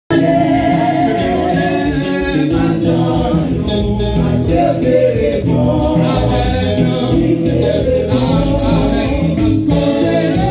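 A man's voice singing a gospel worship song through a microphone and loudspeakers, with other voices singing along and a steady beat behind.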